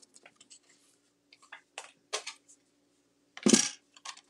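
Cardstock and a paper trimmer being handled on a tabletop: light taps and rustles of paper, then a brief louder thump about three and a half seconds in.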